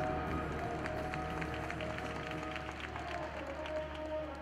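Marching band playing: a held low note and sustained chords, with a quick run of short percussion strikes over them.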